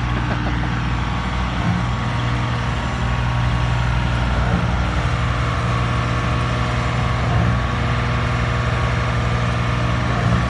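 Engines of a volumetric concrete truck and a trailer-mounted concrete pump running steadily: an even, low drone.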